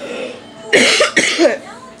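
A woman coughing, two coughs close together about a second in.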